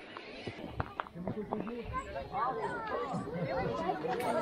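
Indistinct chatter of several people talking, with a few sharp clicks in the first second and a half.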